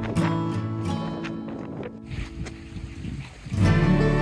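Background music with plucked acoustic guitar. It thins out and drops in level partway through, then a louder passage with heavier bass comes in abruptly near the end.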